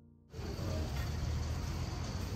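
Soft piano music ends, and about a third of a second in, outdoor street noise with a steady low rumble cuts in suddenly, the sound of road traffic.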